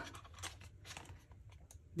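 Paper pages of an album photobook being flipped quickly by hand: a series of faint flicks and rustles.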